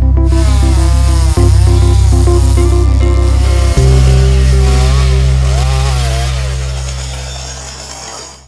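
Background music with steady bass notes, over a petrol chainsaw revving up and down repeatedly as it cuts wood. The music fades out over the last few seconds.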